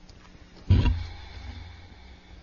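A sudden low thump about two-thirds of a second in, followed by a boomy rumble that dies away over about a second: a binder or papers knocking against a courtroom microphone.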